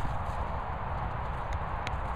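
A bump of the phone being swung at the very start, then a steady low rumble of wind on the microphone, with two faint clicks near the end.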